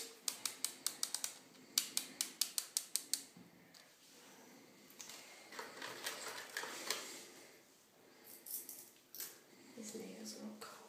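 Dose dial of a fertility injection pen being turned to set the dose: a run of sharp, even clicks, about six a second, with a brief pause after a second or so, for the first three seconds. After that come softer handling sounds of the pen and its needle cap.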